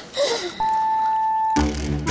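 Countdown sound effect ending in one steady electronic beep about a second long, after which background music with a bass line starts near the end.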